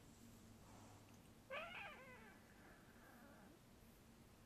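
A very young kitten meowing once, a short call that falls in pitch, about a second and a half in.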